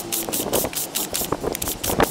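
Sandpaper scraping over a thin nickel sheet in quick back-and-forth strokes, several a second.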